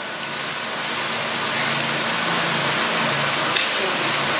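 Steady, even hiss of room and microphone noise that slowly grows a little louder, with a faint low hum underneath.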